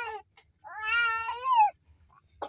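A young child's voice making a short cry and then one long, wordless meow-like call that rises slightly and then falls.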